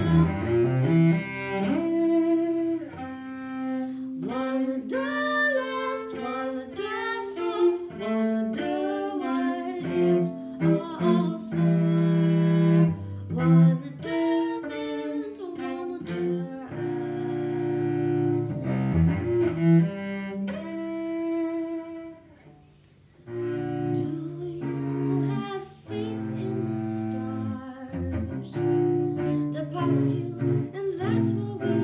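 Solo cello played with the bow, a woman singing a melody over it. There is a brief pause about two-thirds of the way through.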